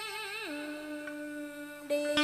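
A woman singing a tân cổ song: a wavering, ornamented phrase that falls about half a second in and settles into a long steady held note. Plucked string notes come in near the end.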